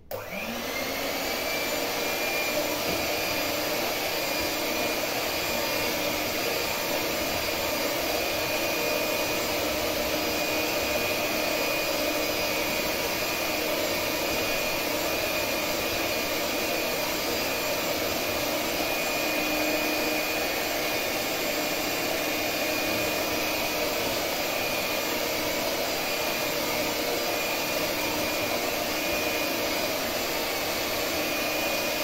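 Electric hand mixer running steadily, its beaters whisking cake batter in a bowl; the motor spins up as it is switched on.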